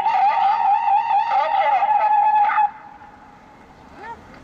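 Emergency vehicle siren sounding a loud warbling tone, which cuts off abruptly about two-thirds of the way in.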